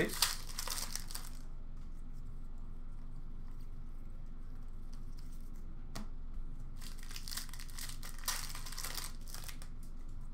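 Foil wrappers of Upper Deck hockey card packs crinkling and tearing as the packs are opened, in two spells: one in about the first second, the other from about seven to nine and a half seconds. A single sharp click comes near six seconds.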